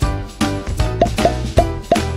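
Background music with a steady beat. About halfway through, four quick cartoon plop sound effects join it, short rising pops about a third of a second apart.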